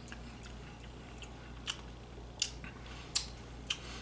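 Short, wet mouth clicks and lip smacks, about five of them spread unevenly, from someone tasting a sip of tequila.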